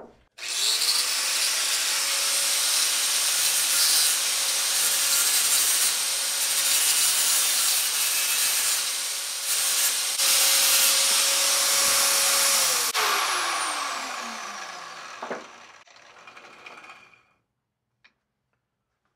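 Electric angle grinder running up and grinding on a cut steel bracket piece to clean it up, a dense grinding noise over a steady motor whine. About thirteen seconds in it is switched off and spins down, its whine falling in pitch as it winds down.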